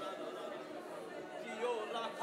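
A congregation praying aloud all at once, many voices overlapping in a steady murmur.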